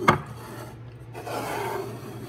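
Wooden number blocks handled on a countertop: a sharp knock as a block is set down, then a rough scraping as a block is slid across the counter for about a second near the end.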